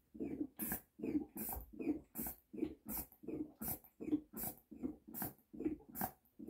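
Boxio Wash's air pump being worked by hand in a steady rhythm, about eight strokes at a little over one a second. Each stroke is a low push followed by a sharp rush of air, building pressure in the water canister.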